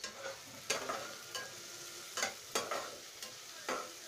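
Spatula stirring chopped onions, tomatoes and chillies in a kadai, with about six sharp scrapes and knocks of the spatula against the pan over a faint sizzle of frying.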